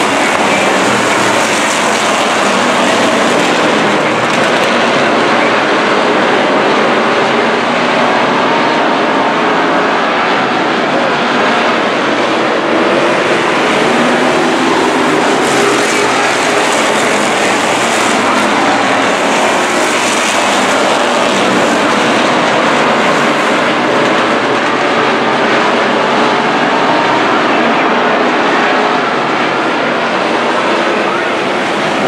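A pack of street stock race cars lapping the track, their V8 engines running hard together in a loud, steady, unbroken din.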